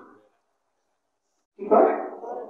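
A man's voice through a microphone: the echo of a loud shout dies away at the start, then about a second and a half of silence, then a short loud voiced call near the end.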